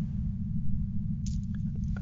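A pause in the talk: a steady low background rumble, with a few faint mouth clicks or a breath in the second half.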